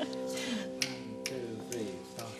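Quiet instrumental intro of a slow, sad pop ballad: sustained held notes with a few sliding notes, and a few light clicks.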